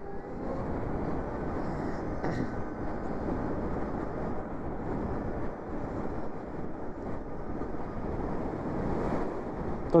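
Steady wind and road rush from a Zero SR electric motorcycle accelerating out of a roundabout, with no engine note; it swells a little in the first second as speed builds.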